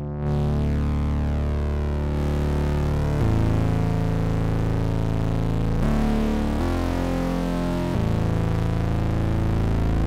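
Audjoo Helix software synthesizer playing a preset: thick, sustained chords that change about every one to three seconds, the tone growing brighter over the first two seconds.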